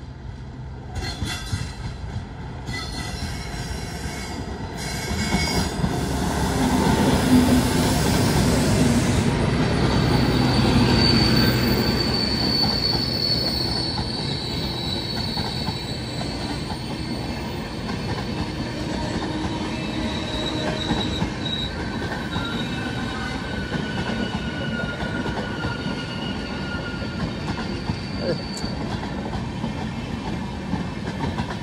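Electric-locomotive-hauled passenger express passing close by: two short high-pitched blasts near the start, then the locomotive goes by loudest about seven to twelve seconds in. After it, the coaches keep rolling past in a steady rush of wheels on rail, with thin high wheel squeals.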